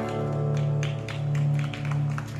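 Acoustic guitar chord left ringing after the last strum, slowly fading, with a few light taps over it.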